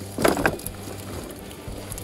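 Gizzard shad dropping out of a cast net and flopping on a boat deck, with one louder rustling slap about a quarter second in, over a low steady hum.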